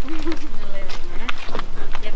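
Indistinct voices talking, with footsteps on wooden footbridge planks.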